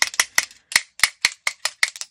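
A quick run of short, sharp tapping clicks, about four to five a second, from a hard tool tapped to flick paint-pen ink splatters onto a watercolour paper tag.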